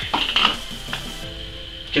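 Plastic funnel being set into the neck of an empty plastic bottle: a few light plastic clicks and knocks, the last about a second in.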